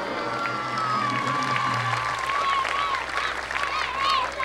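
A crowd applauding while music plays, with a high, wavering melody line over the clapping.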